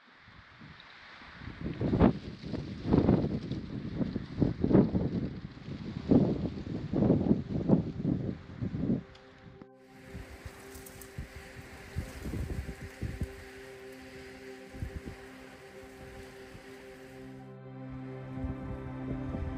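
Wind buffeting the microphone in irregular gusts over a steady hiss. About halfway through, ambient music with long sustained notes comes in, with fainter wind rumble still underneath.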